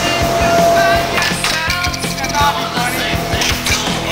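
Air hockey puck and mallets clacking in quick, irregular hits against each other and the table rails, over loud rock music.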